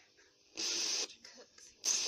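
Two bursts of hiss, each about half a second, from a homemade two-transistor FM receiver's speaker amplifier as a hand moving near the breadboard wiring knocks it off the station. The receiver is very sensitive to the loose wires around it.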